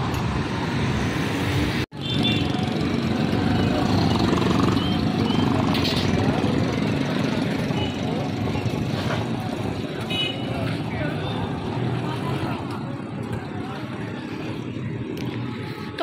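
Busy street traffic: auto-rickshaws, motorcycles and other vehicles running past, with voices of passers-by mixed in. The sound cuts out for an instant about two seconds in.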